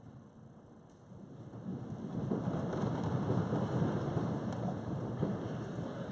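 A large crowd sitting down in gym bleachers: a rising rumble of shuffling feet, bench knocks and rustling clothing that swells about a second and a half in and stays loud.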